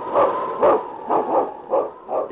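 A dog barking rapidly, about five sharp barks in two seconds, as a sound effect on an old radio recording.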